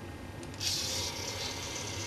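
A homebuilt robot's arm motors running as the arm is driven down: a high, hissy whir that starts about half a second in and lasts about a second and a half.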